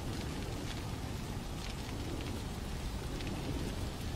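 Fire burning through a wooden building: a steady low rushing noise with faint scattered crackles.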